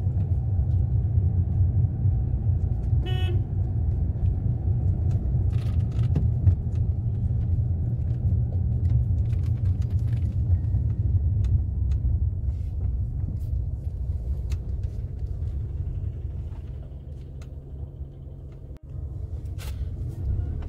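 Maruti Suzuki Alto 800's three-cylinder petrol engine and road noise heard from inside the cabin, a steady low rumble while the car is driven slowly in third gear, easing off somewhat near the end. A short car horn toot about three seconds in.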